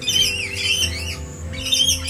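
Rainbow lorikeets screeching in two bouts, one at the start and one near the end, over background music with steady, sustained low notes.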